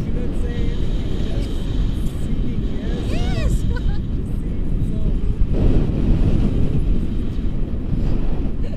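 Wind buffeting the camera microphone in paraglider flight: a steady low rushing that grows louder a little past halfway. A brief wordless voice rises and falls about three seconds in.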